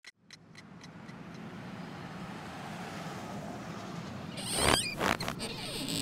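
Regular ticking, about four a second, fading out in the first second or so, giving way to a steady low background rumble that builds, with a louder whooshing rush about four and a half seconds in.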